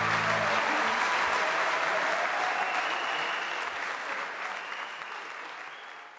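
Audience applauding as the song ends, the last held note of the music dying away in the first half-second. The applause fades out toward the end.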